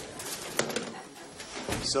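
Wooden office door with a glass panel being opened and pulled shut, closing with a thud near the end, over scattered clicks and clatter from the office.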